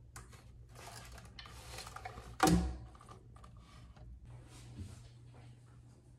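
Handling noise as a hand rummages at a hair dryer and its cord in a wooden storage box, then one sharp wooden knock about two and a half seconds in, as of the box's wooden lid being shut, followed by a few light clicks over a low steady hum.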